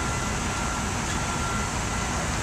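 Steady outdoor hiss of traffic and rain on a wet street, with a faint thin steady whine in the background that fades out near the end.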